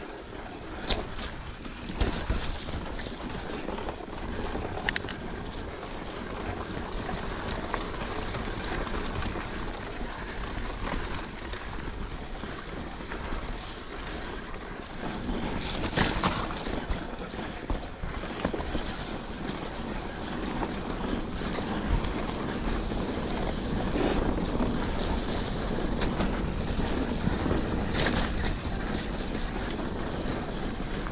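Mountain bike ridden along a wet, muddy dirt trail: a steady rush of wind on the microphone and tyre noise, growing louder about halfway through. Occasional sharp clicks and knocks come from the bike over the rough ground.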